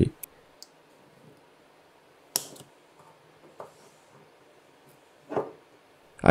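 Sharp, isolated snips of a cutting tool going through the nickel strips that join an 18650 lithium-ion battery pack to its BMS board. There are a few scattered clicks, the loudest about a third of the way in and another near the end.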